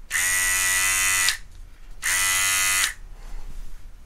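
Cordless electric hair clipper switched on and off twice, giving a steady buzz of about a second each time, with a short pause between.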